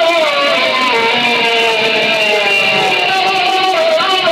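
Loud, distorted live noise-rock music, led by pitched tones that waver slowly up and down in a melody, with no strong single hits standing out.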